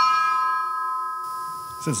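A single bell struck once and left to ring: a clear tone with several overtones that fades slowly over about two seconds. It is a memorial toll following a fallen officer's name in the roll call. A man's voice starts near the end.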